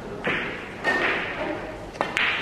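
Two sharp knocks about half a second apart, the second with a short ring.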